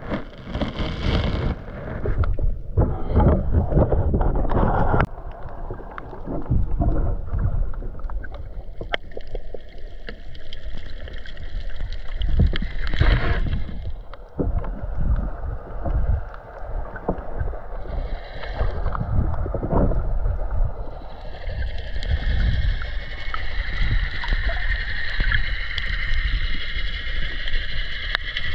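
Water rushing and sloshing against a pole-mounted GoPro's waterproof housing as it is swept through the water, in uneven surges loudest in the first few seconds, with scattered clicks. A steadier higher hum builds toward the end.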